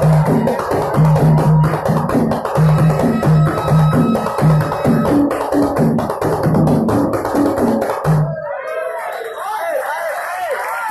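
A group of men singing a devotional song to a steady beat of hand drums. The music stops abruptly about eight seconds in, and a man starts speaking.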